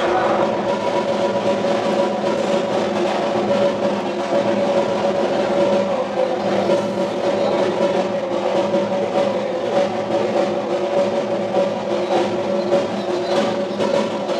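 Drums beaten in a fast, continuous roll, with steady ringing tones held underneath throughout.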